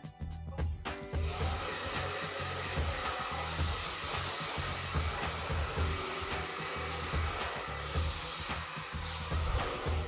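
Handheld hair dryer running steadily from about a second in. Over it come several hissing bursts of aerosol dry texturing spray: the longest, about a second, near the middle and shorter ones near the end.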